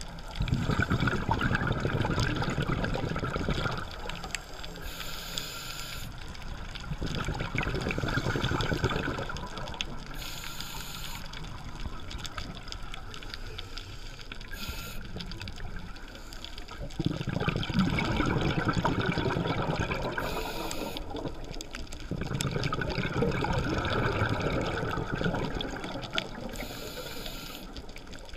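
Scuba breathing through a regulator, heard underwater at the camera: a short hiss of inhalation through the demand valve about every five seconds, each followed by a few seconds of exhaled bubbles gurgling out of the exhaust.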